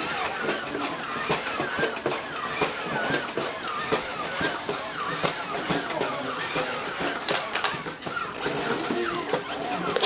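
A toy robot's electronic voice warbling and chattering without words, mixed with sharp clicks and knocks from the robot being moved and handled.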